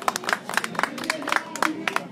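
Applause from a small audience: individual hand claps, several a second and unevenly spaced, dying out just after the end.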